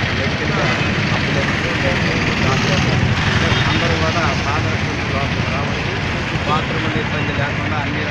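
A man speaking into reporters' microphones over a steady din of street traffic.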